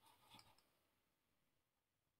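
Near silence: a faint, short click just under half a second in, then complete silence.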